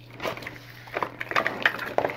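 Small plastic toy pieces being handled and set down on a wooden board: a scattered run of light clicks and taps.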